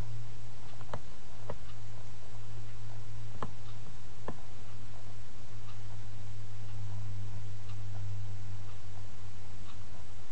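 A steady low electrical hum, with a few faint computer mouse clicks in the first half as the on-screen view is zoomed in.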